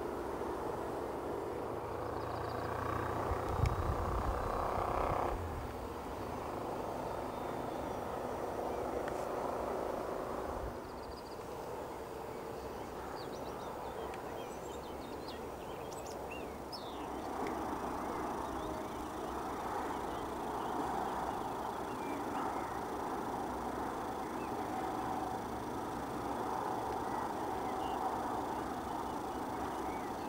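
Electric motor and propeller of an RC electric glider droning from high up, dropping in level at about five seconds and again near eleven seconds, then swelling again later. A few faint bird chirps come through in the middle.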